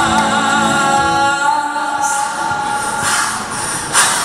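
Male vocalist singing an Armenian song live into a microphone over musical accompaniment, holding a long note with vibrato through the first half.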